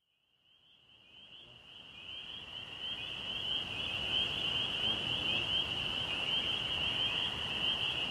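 High, steady, buzzing chorus of calling animals in the trees, with a fast pulsing texture. It fades in over the first few seconds and cuts off suddenly near the end.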